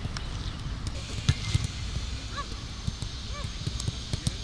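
Footballs being kicked on a grass pitch: dull thumps at irregular intervals, the loudest a little over a second in. Two short calls, each rising then falling in pitch, about a second apart in the second half.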